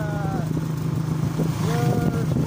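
Small vehicle's engine running at a steady speed while it moves along, a constant low hum.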